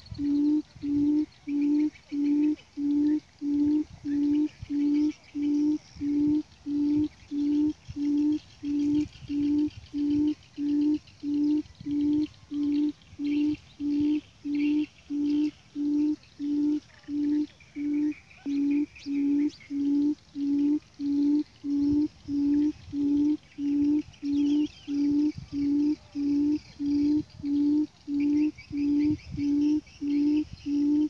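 Buttonquail's low hooting call, the lure for the trap: one note repeated very evenly, about three every two seconds. Faint chirps of other small birds sound behind it.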